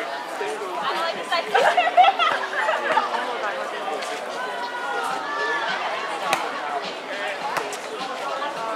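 Several voices of players and onlookers talking and calling out over one another, not clear enough to make out words. A couple of brief sharp knocks come through near the end.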